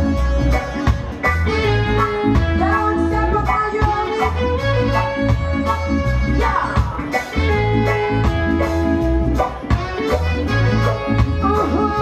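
Live reggae band playing, with a repeating bass line and a steady beat under guitars and keyboard.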